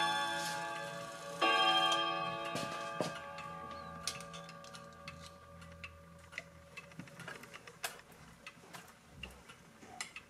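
Wall clock's metal gong rods ringing: a strike just before is still fading, and a second strike about one and a half seconds in rings out and slowly dies away. After that come the clock's ticking and small, irregular clicks as fingers touch the hammers and rods.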